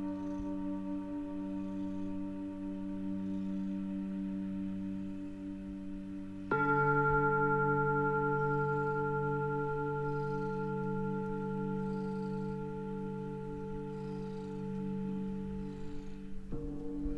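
Singing-bowl music: long ringing tones with a slow wobble, then a new, louder strike about six and a half seconds in that rings on and slowly fades.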